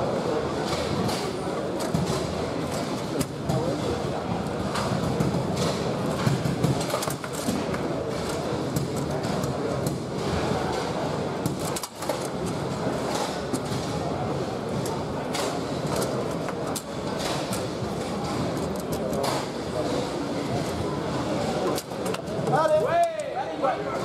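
Foosball rally on a Bonzini table: frequent sharp clacks of the ball striking the figures and the table walls and the rods knocking, over steady crowd chatter.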